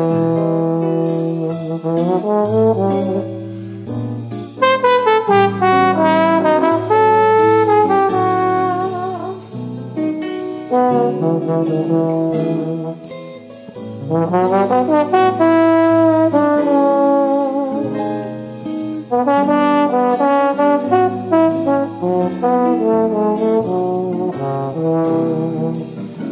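Upbeat instrumental jazz: a brass lead melody over a bass line and steady light percussion.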